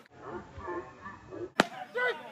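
A baseball popping into the catcher's leather mitt: one sharp snap about a second and a half in, as the pitch is caught for strike three. Faint voices can be heard before it.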